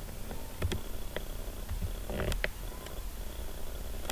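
Scattered computer keyboard keystrokes and clicks, a search term being typed, over a low steady hum.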